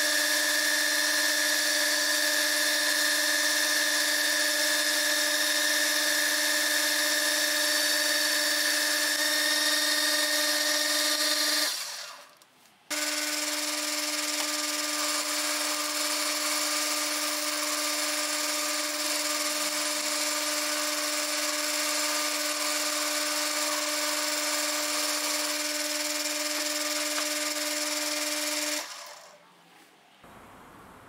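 Metal lathe running, turning aluminium bar stock, with a steady motor and gear whine. It winds down about twelve seconds in, starts again a second later, and winds down again near the end.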